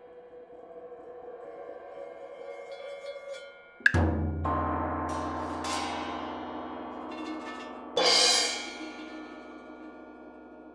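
Solo percussion struck with mallets in a contemporary concert piece: soft sustained metallic ringing, then about four seconds in a sharp loud stroke with a deep low ringing that holds, followed by quicker lighter strokes. About eight seconds in comes a bright cymbal-like crash that fades over about a second, leaving metal ringing.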